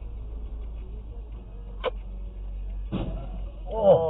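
Steady low rumble of a car idling and rolling, heard from inside the cabin, with a sharp click near the middle. Near the end a loud, short exclamation from a person falls in pitch as the pickup ahead cuts across the intersection.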